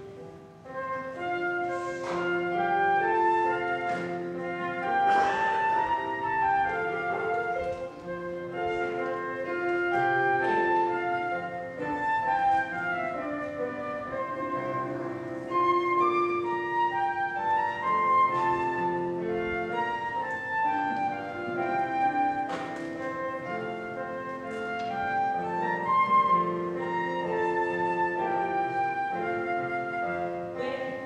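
Flute playing a melody of held notes over piano accompaniment.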